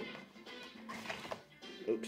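Quiet background music with a few soft rustles and taps as a cardboard booster box and foil card packs are handled.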